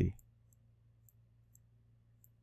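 Faint, sparse ticks of a stylus on a pen screen while handwriting, about half a dozen across two seconds, over a low steady electrical hum. A spoken word trails off at the very start.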